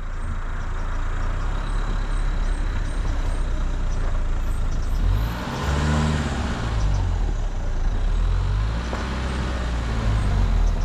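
Dacia Duster driving along a rough gravel green lane: steady engine running with tyre and road rumble. Around the middle the engine note dips and then rises again.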